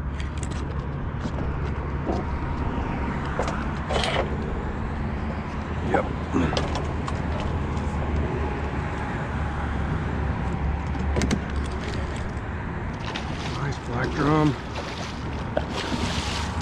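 Low, steady hum of a 30 HP Mercury outboard idling, with scattered clicks and knocks. Near the end, water splashes as a hooked black drum thrashes at the surface.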